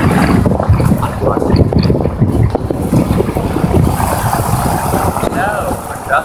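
Wind buffeting the microphone of a moving open vehicle, a loud steady rumble with road and vehicle noise underneath.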